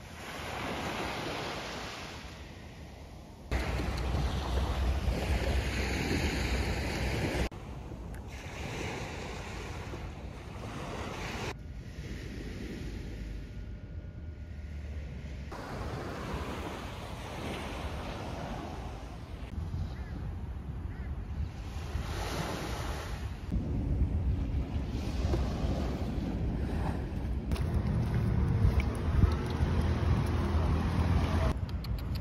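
Small sea waves breaking and washing up a sandy beach, with wind buffeting the microphone. The level jumps at several points as the footage cuts between takes.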